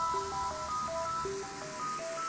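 Background music: a melody of short, clear notes, about four a second, over a soft low pulse.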